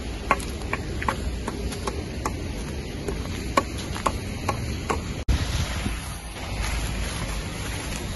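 Footsteps crunching on an icy pavement, about two steps a second, over a low rumble of wind on the microphone. About five seconds in they cut off suddenly, and steady wind noise follows.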